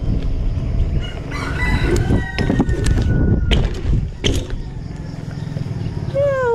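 Wind rushing over the microphone and tyre rumble from a BMX bike ridden along a concrete road, with a rooster crowing in the middle and a few sharp clicks.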